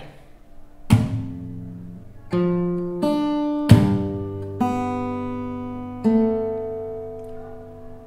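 Acoustic guitar played fingerstyle through one bar moving from an F chord to a G chord: palm-muted bass notes on the low string and plucked upper strings, left to ring. Two sharp percussive hits land with the bass, about a second in and just before the middle, and the second is the loudest.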